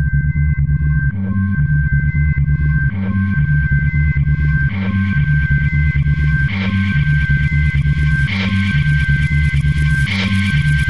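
Techno track: a repeating synth bass riff under steady high synth tones, with an accented hit about every two seconds.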